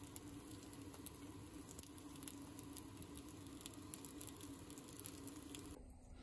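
Faint sizzling with scattered light crackles and pops from dumplings frying in a nonstick pan, over a low steady hum.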